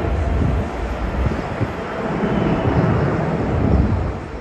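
Widebody jet airliner taking off at takeoff thrust, a loud steady jet-engine noise heavy in the low rumble, held through the climb-out.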